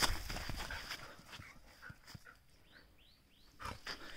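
A Kombai dog scrambling across loose sand, its paws scuffing and kicking up sand, most of it in the first second, then a few faint short sounds.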